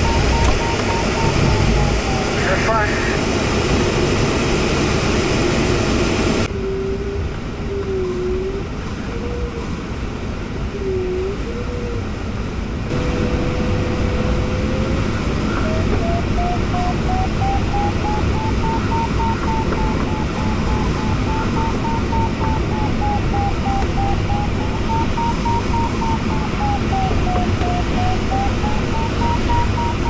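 Glider variometer beeping, sounding vertical speed with a tone that rises and falls in pitch. It drops low and wavers about six seconds in, steadies briefly, then climbs back high and keeps rising and falling. Under it runs a steady rush of air over the fiberglass cockpit of a Jantar Std. 2 sailplane.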